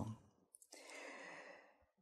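Near silence broken by a faint breath drawn by the lecturer, lasting about a second and starting about half a second in.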